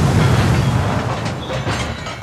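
Crash sound effect of a rocket hitting the ground: a sudden loud explosion followed by a deep rumble that slowly fades.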